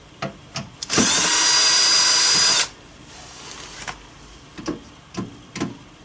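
Cordless drill-driver running in one steady burst of about a second and a half, then stopping. A few light clicks and knocks of handling come before and after it.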